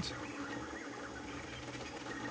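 Faint, steady mechanical running of a Voron 0.2-based CoreXY 3D printer printing at speed, as its motors move the print head.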